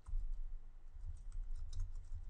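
Typing on a computer keyboard: an uneven run of key clicks over a low steady hum.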